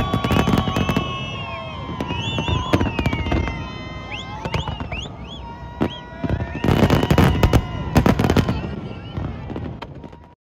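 Fireworks display: dense clusters of crackling bursts, heaviest about a second in and again around seven and eight seconds, with short whistles gliding up and down between them.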